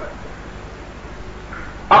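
Pause in a man's sermon on an old 1978 recording: steady background hiss and low hum, with the preacher's voice coming back in right at the end.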